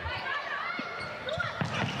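Volleyball being struck a few times during a rally, short sharp hits over the steady noise of an arena crowd.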